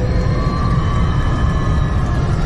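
Steady low road and wind rumble inside the cabin of a Mercedes S-Class travelling at high motorway speed, around 240 km/h, with a few faint sustained tones over it.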